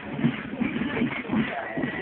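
Marching-band music from a folk march company: pulsing drums with a thin, steady high fife-like tone over them.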